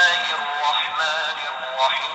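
A man's voice chanting Qur'an recitation in long, wavering held notes, played back through the small speaker of a handheld device.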